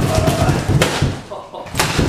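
Large corrugated cardboard shipping box being pulled open by its top flaps: a loud scraping rustle of cardboard, with two sharp thumps of the flaps about a second apart.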